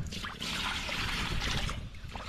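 Water splashing and trickling as a hand scoops it over a small grass carp lying in a wet unhooking cradle, a steady splashy hiss that starts a moment in and dies away near the end.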